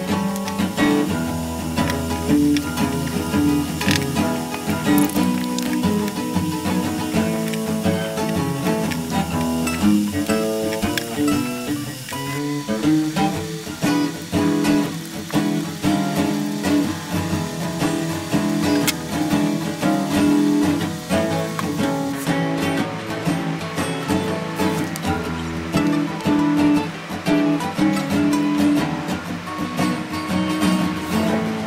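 Background music: acoustic guitar playing a blues tune.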